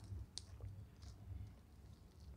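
Quiet eating sounds: three faint, short clicks of mouth and fingers at a meal, over a low steady rumble.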